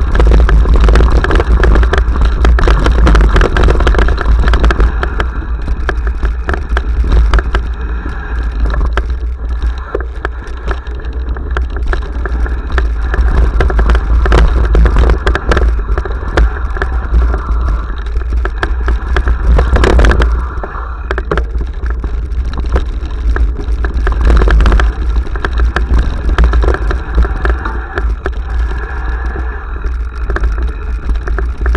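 A mountain bike descending a rough dirt and leaf-covered trail, heard close up from a camera mounted on the bike: a continuous clatter of knocks and rattles from the bike over roots and stones, tyres crunching on dirt, and heavy wind rumble on the microphone. One harder knock stands out about twenty seconds in.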